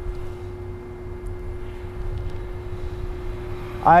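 Steady one-tone hum from a DC fast charging station while it delivers power to the car, over a low rumble.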